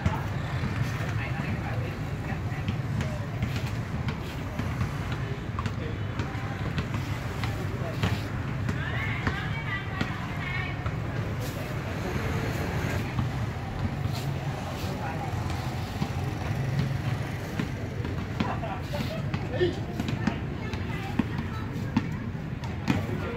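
Outdoor street ambience: a steady low rumble of traffic with distant, indistinct voices and a few sharp knocks.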